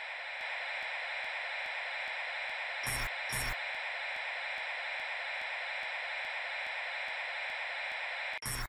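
Steady hiss of electronic static, a sound effect laid under an animated title intro, with faint regular ticks about three times a second. Two short, louder bursts of crackle come about three seconds in.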